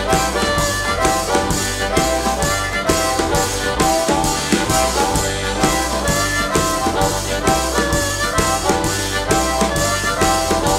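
Instrumental break of a live acoustic blues band: a harmonica played into a microphone carries the lead with held and bending notes, over a steady beat on a drum, an upright double bass and a strummed acoustic guitar.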